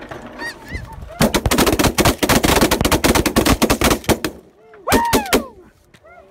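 Hunters' shotguns firing a rapid volley of many shots over about three seconds into a flock of snow geese. Snow geese call before the shooting, and one loud goose honk sounds about five seconds in.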